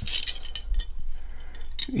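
Layered metal necklace chains, including a 4 mm tennis chain, clinking and jingling against each other and the pendants as fingers lift and shift them. There is a cluster of light clinks at the start and another in the second half.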